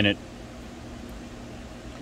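A single spoken word, then a steady low background hum with a faint constant tone and no distinct events.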